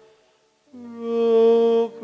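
A man's voice chanting a prayer on one held note. It starts under a second in, after a near-silent pause between phrases.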